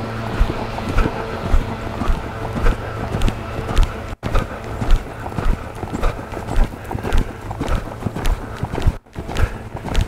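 Hoofbeats of a horse loping on soft sand arena footing, a steady rhythmic thudding about two beats a second.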